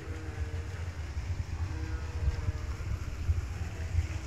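Wind buffeting a phone microphone: a steady, uneven low rumble.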